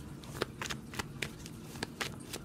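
Tarot cards being shuffled, a handful of irregular sharp snaps of card against card.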